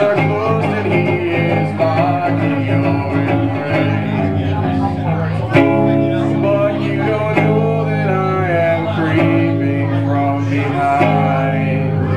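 Live acoustic guitar playing an instrumental passage of a song, sustained strummed chords with a hard strum about halfway through.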